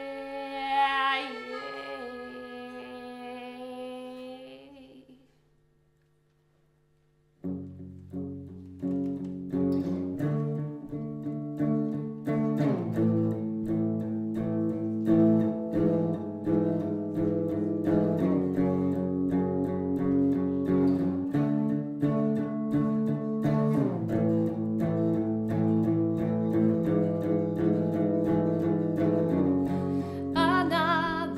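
Live band music: a held chord of accordion and female voice dies away over the first few seconds, followed by about two seconds of near silence. Then an electric guitar comes in playing chords in a steady picked rhythm that runs on to the end.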